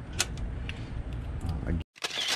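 Small metallic clicks and taps from handling a doorknob and lock parts over a metal toolbox drawer, the sharpest click a moment after the start, over a steady low background hum; the sound cuts off suddenly shortly before the end.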